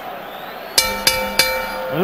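Boxing ring bell struck three times in quick succession about a second in, its tones ringing on over arena crowd noise.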